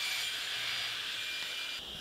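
A power saw running with its blade spinning, a steady high whirring hiss with no cut into the wood heard.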